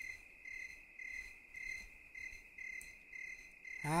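Crickets chirping: a steady high trill with chirps repeating about twice a second.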